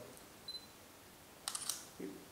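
Quiet room tone in a pause, broken by a faint brief tick about half a second in and a quick cluster of sharp, light clicks about a second and a half in.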